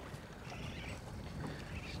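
Quiet background of wind and small waves around an aluminium fishing boat on open water, with a low, steady rumble.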